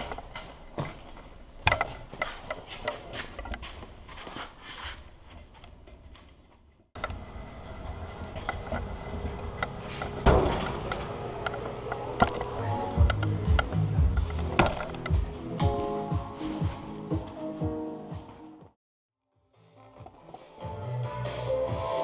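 Clatter and knocks from boxed speakers being handled and wheeled on a hand truck, with music underneath. The music becomes clearer near the end, after a short silent gap.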